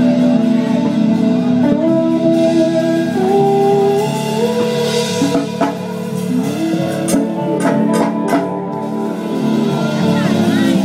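Live rock band playing an instrumental passage: held chords stepping upward over electric guitar, with a few sharp drum hits about seven to eight and a half seconds in.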